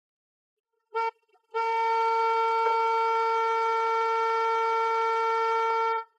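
SUV horn: a short honk, then a long steady blast on one pitch lasting about four and a half seconds that cuts off abruptly near the end, sounded by the wounded driver slumping onto the steering wheel.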